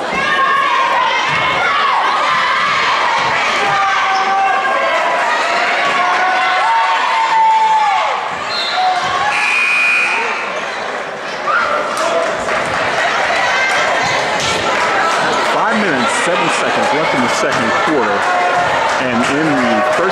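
A basketball bouncing on a gym's hardwood floor among the voices of spectators and players talking.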